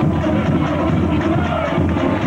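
A samba school's bateria drumming a fast, steady samba beat with the samba-enredo sung over it.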